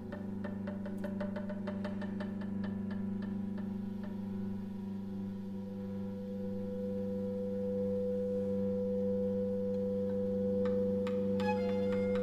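Chamber music for clarinet and string quartet: low notes held as a steady drone under a sustained tone, with a quick run of short repeated notes, about five a second, that fades out in the first few seconds. Short higher notes enter near the end.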